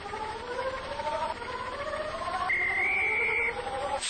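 Cartoon-style electronic car-engine sound effect. It whines upward in pitch and drops back about every second and a half, like a car shifting up through gears. A high steady tone sounds over it for about a second past the middle.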